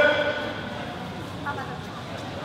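Background of a large, echoing sports hall: a murmur of people's voices, with the tail of a man's spoken call at the very start and a brief faint call about one and a half seconds in.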